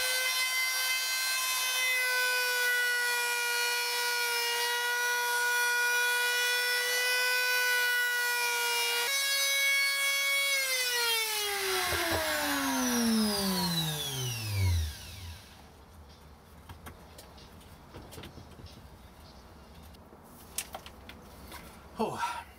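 Compact palm router running at a steady high-pitched whine for about ten seconds, then switched off, its pitch falling steadily as the motor spins down over about five seconds. Faint clicks of handling follow.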